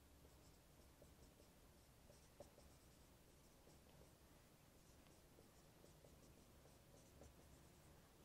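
Faint dry-erase marker strokes squeaking and scratching on a whiteboard while someone writes, heard as short scattered scrapes over near-silent room tone.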